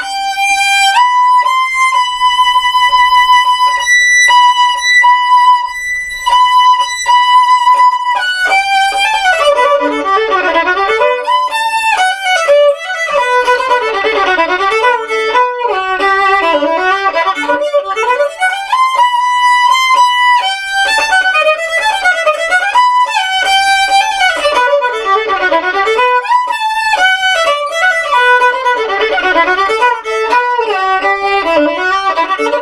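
Solo violin, played with a bow. At first it plays short repeated notes on one high pitch, then, about eight seconds in, it breaks into fast runs that sweep down and back up again and again.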